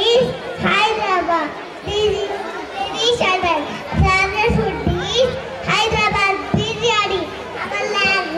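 A young child's high-pitched voice speaking into a microphone, amplified in a large hall.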